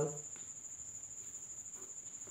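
A continuous high-pitched trill with a slight regular pulse, and a few faint scratches of a pencil drawing a line along a set square on paper.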